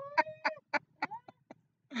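A man laughing in short repeated bursts, about four a second, with a held high note at the start, the bursts growing fainter and stopping shortly before the end.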